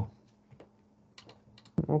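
Typing on a computer keyboard: a few light key clicks about half a second in, then a quicker run of keystrokes a little past a second in. A man's voice starts again near the end.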